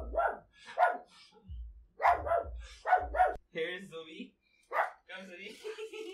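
A dog barking in a run of short barks, then a drawn-out whine near the end.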